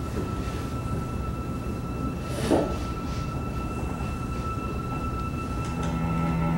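Steady low rumble with a faint, thin high hum over it, and one brief swish about two and a half seconds in, from a video artwork's soundtrack playing in a lecture room.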